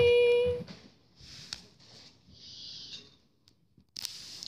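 A child's voice holding one steady, high-pitched sound-effect note that stops about half a second in, followed by faint rustling of toy figures being handled and a short soft hiss.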